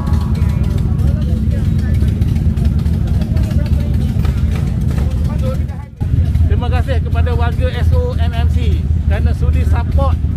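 Low, steady rumble of an idling motorcycle engine with voices around it. After a cut about six seconds in, a man speaks over a continuing low rumble.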